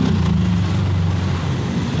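Motorcycle and car engines passing close by, a steady low engine note that dips slightly in pitch in the first half second.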